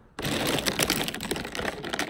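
Plastic pens clattering together as a handful of them is sorted and dropped into a pen case, a dense run of quick clicks that starts abruptly just after the start.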